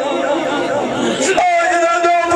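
A man singing a Punjabi dhola folk verse through a microphone, his voice turning quickly up and down in pitch and then settling into a long held note about one and a half seconds in.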